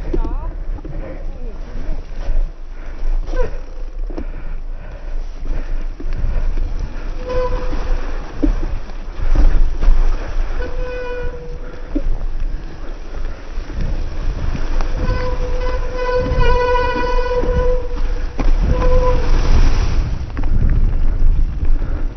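Electric mountain bike riding down a leaf-covered forest trail: a continuous rumble of tyres and wind on the microphone with knocks over roots and bumps. Several times a drawn-out, steady whine at one fixed pitch comes from the bike, the longest about three seconds, starting roughly a quarter of an hour...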